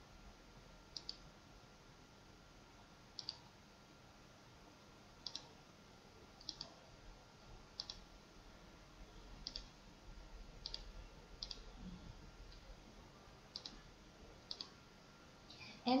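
Computer mouse button clicking, about ten separate clicks a second or two apart, several in quick pairs, over a faint low hum.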